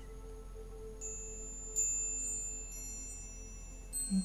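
Hanging metal tube wind chime set ringing by hand. High, clear tones start about a second in, a second touch adds more just before two seconds, and they slowly fade.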